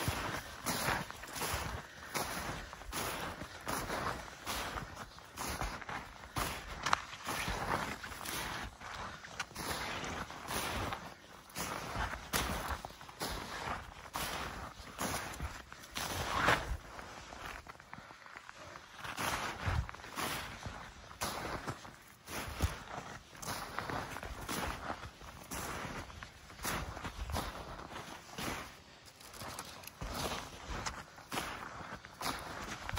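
Footsteps trudging through deep snow, a steady walking pace of crunching, swishing steps.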